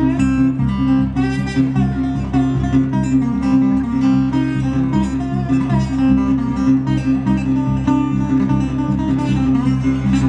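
Solo acoustic guitar playing an instrumental blues passage, with a steady low bass note under changing higher notes.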